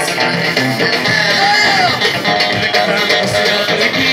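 Live Amazigh rais music: plucked lutes played with drums and percussion in a steady rhythm, with a sliding melodic line about a second in.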